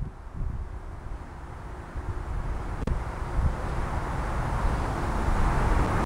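Outdoor background rush with a low rumble, slowly growing louder. There is one faint tap about three seconds in.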